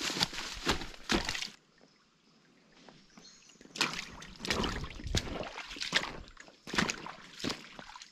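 Footsteps splashing through a shallow, stony stream, about one step every two-thirds of a second. There is a pause of about two seconds after the first three steps.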